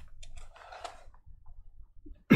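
Faint rustling and a few light clicks from handling: a black cloth drawstring pouch worked open and a clear plastic card holder drawn out of it, the handling noises dying away in the second half.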